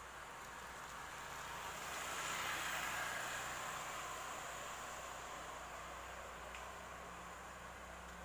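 A motorcycle passing close by: its engine and tyre noise swells to a peak about two and a half seconds in, then slowly fades as it moves away.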